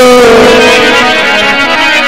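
Live Punjabi folk music: a man's sung note, held over from the line before, slides slightly down and fades about a second in, over a harmonium playing steady chords.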